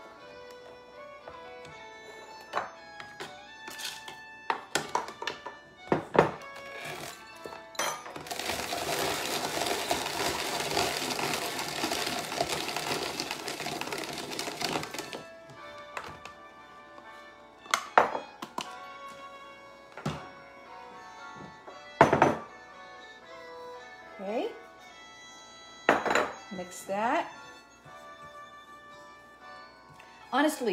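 Hand-cranked rotary drum grater grinding sliced almonds: a steady grating rasp for about seven seconds in the middle, with sharp knocks and clicks of the grater and bowl before and after, over soft background music.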